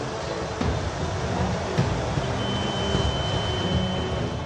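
Steady low rumble of a vessel's engine mixed with wind and sea noise, recorded aboard a ship at sea. A thin, high steady whistle-like tone joins it about halfway through.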